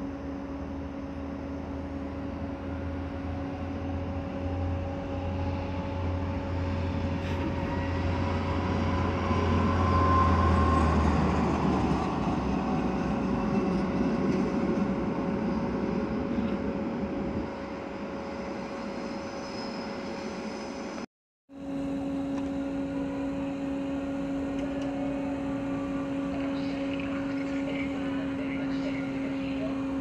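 Trains moving through a railway station: a low rumble and a rising motor whine build to the loudest point about ten seconds in, then fade. After a brief break in the sound, a push-pull train with an ÖBB CityShuttle driving trailer rolls slowly along the platform, with a steady hum and faint clicks near the end.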